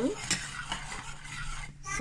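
A metal spoon stirring a thick chocolate mixture in a stainless steel saucepan, scraping around the pan with a few light clicks against the metal.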